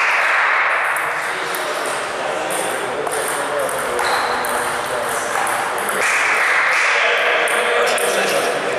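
Table tennis balls clicking off bats and table tops in quick, irregular strokes during rallies, with more clicks from the neighbouring tables. Underneath is a steady, loud background of voices and hall noise.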